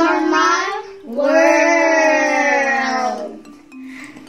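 Voices singing, or calling out in song, two held notes: a short one, then one long note of about two seconds that dips slightly in pitch before fading out.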